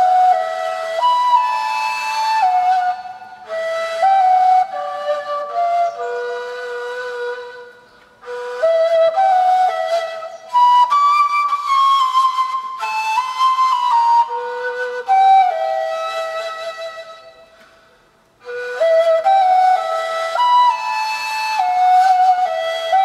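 Arabic ney, an end-blown reed flute, played solo: a slow melody of held notes stepping up and down. It comes in three phrases, each fading out into a short gap, about eight seconds in and again near the end.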